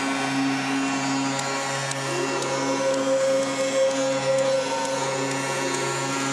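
Ice hockey arena goal horn sounding a long, steady low note over the arena's noise, signalling a home goal.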